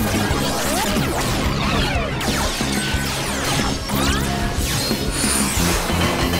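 Action soundtrack music layered with sci-fi sound effects: several sweeping whooshes and crashing impacts as giant robots move and energy blasts flare.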